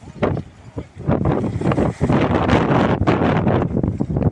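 Wind buffeting a phone's microphone outdoors, loud and rumbling. It comes in choppy gusts at first, then turns into a steady rush from about a second in.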